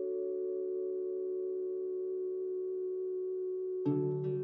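Intro jingle music: a chord of soft bell-like mallet notes held ringing steadily, then a short bright sting of plucked, strummed notes near the end as it resolves.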